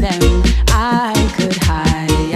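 Reggae song: a deep, held bass line under regular drum hits, with a singer's voice ending a word and then holding a wavering note about a second in.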